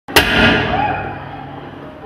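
A sudden loud crash, then a ringing tail that fades over about a second and a half.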